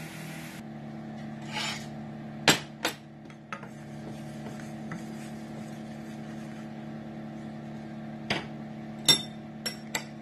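A spoon knocking and scraping against a stainless steel skillet while melted butter and garlic are stirred. There is a cluster of sharp knocks a few seconds in and another near the end, over a steady low hum.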